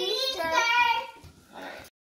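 A young child's voice, drawn out in a sing-song way, fading about a second in; a fainter voice follows near the end before the sound cuts off abruptly.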